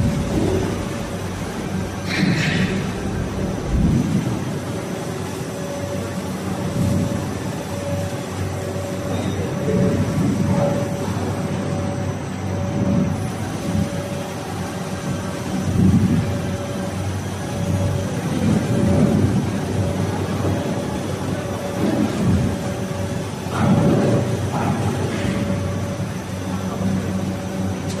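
ABA blown film extrusion line with automatic winder running: a steady machine hum with several constant tones over a continuous noise bed.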